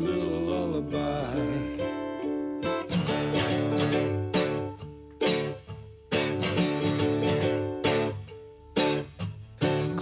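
Music: a ukulele strumming chords in an instrumental passage of a lullaby song, with a sung line trailing off in the first second.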